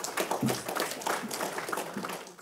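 Audience applauding: many hands clapping in a dense, irregular stream.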